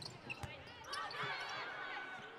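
A volleyball served with a single thump of hand on ball about half a second in, followed by faint voices and court noise in the gym.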